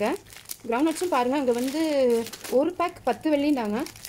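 A woman's voice talking, with a thin plastic bag crinkling as it is twisted and tied shut by hand.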